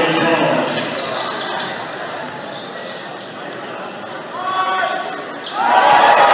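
Basketball game in a large gym: crowd noise dies down over the first couple of seconds, a basketball bounces on the hardwood floor during the quieter middle, and fans' shouting rises sharply near the end.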